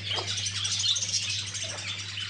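A flock of budgerigars chirping, many small high chirps overlapping in a steady stream.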